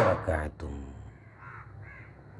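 A man's voice briefly at the start, then two faint calls from a bird in the background in the second half.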